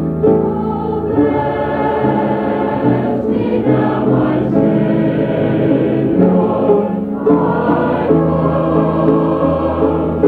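Youth choir singing a gospel hymn in sustained, held notes, on a muffled, low-fidelity old recording.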